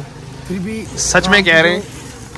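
A man's voice talking in short bursts, with brief pauses between.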